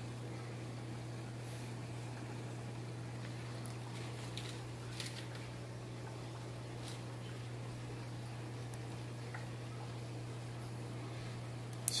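A steady low hum with a few faint, short clicks about four to seven seconds in, from small surgical scissors snipping through a goldfish's wen tissue.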